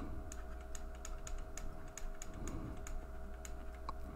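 Light clicks of a stylus on a pen tablet while a word is handwritten, about four or five a second, over a faint steady hum.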